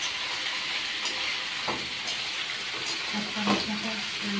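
Squid sizzling as it is stir-fried in a wok, with a spatula scraping through it and knocking against the pan twice, the second knock louder.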